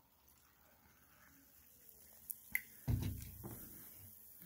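Carbonated cola poured from a plastic bottle into a glass: a faint trickle with fizzing. About three seconds in comes a knock, the bottle being set down on a wooden table, with the fizz hissing on after it.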